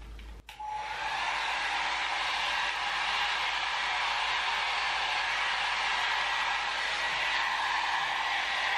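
Jinri Style 2 Go hot air styling brush coming on about half a second in, then its fan blowing a steady rush of air with a faint whine.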